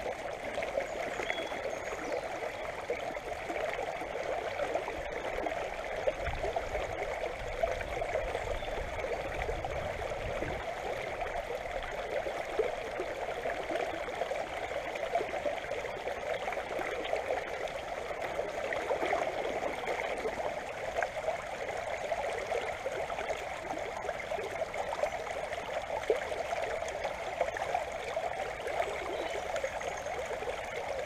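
Shallow river water running steadily over a gravel and pebble bed close to the microphone, a continuous trickling flow.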